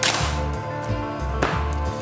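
Zenza Bronica S2A medium-format SLR's focal-plane shutter firing: a sharp mechanical clack, then a second clack about a second and a half later. Background music with a steady bass line runs underneath.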